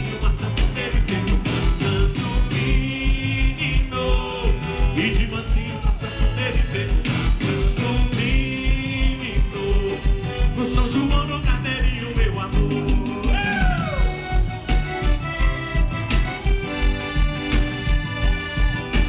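Live axé band playing at full volume: electric guitar, bass and keyboard chords over a steady kick drum beating a little over twice a second, with hand percussion.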